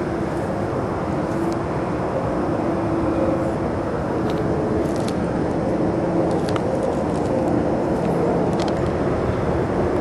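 Steady drone of distant motor vehicles, with a faint wavering hum through it and a few light clicks.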